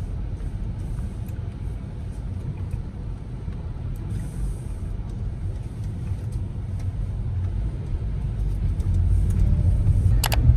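Steady low rumble of a car heard from inside the cabin, growing a little louder near the end.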